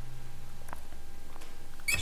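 Low steady hum that fades out near the end, with two faint clicks.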